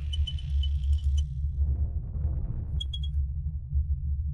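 Logo-reveal sound effect: a deep, steady rumble under bright, glassy tinkles that sparkle through the first second and come back briefly near the three-second mark.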